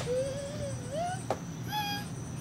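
A high, wavering whine-like call that holds its pitch for about a second, then rises, followed by a second short, higher call near the end.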